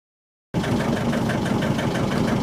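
A boat's engine running steadily below deck, a low hum with a regular knock about seven or eight times a second, starting about half a second in.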